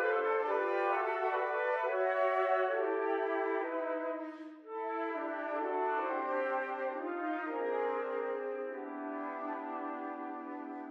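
A quartet of concert flutes playing sustained chords in their low register, the four parts moving in step. There is a brief break about halfway, and the flutes then settle onto a long held low chord near the end: the closing bars of the movement, played without slowing down.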